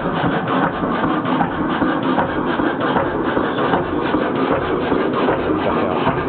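Kelvin K1 single-cylinder marine engine running steadily on diesel, with a fast, even beat of firing strokes.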